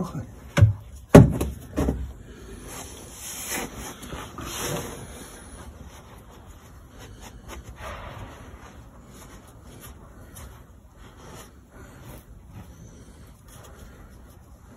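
A few sharp knocks in the first two seconds, then a cloth rag rubbing and wiping over the greasy rear differential housing of a 1964 Mercedes 220, louder for a few seconds and then softer with small clicks.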